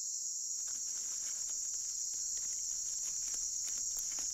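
Steady, high-pitched chirring of night insects in tropical forest, a continuous cricket chorus. From about half a second in, faint scattered ticks and rustles join it.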